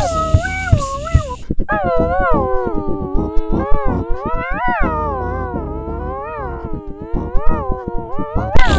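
Multi-tracked a cappella voices singing a wordless progressive-metal line that slides continuously up and down in pitch, over a low vocal rhythm pulsing underneath.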